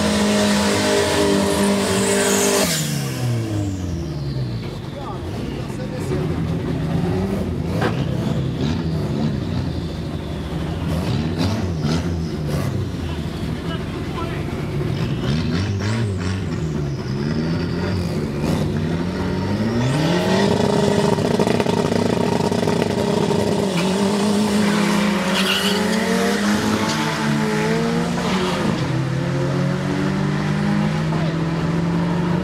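Drag-racing car engines: a burnout with the engine held at high revs and tyres squealing, cut off about two and a half seconds in, then engines revved up and down again and again while staging at the line. About twenty seconds in the revs rise and are held high, and near the end they climb as the cars launch down the strip.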